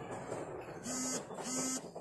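Two short, identical buzzes about half a second apart, each a steady low hum with a hissing top that starts and stops abruptly.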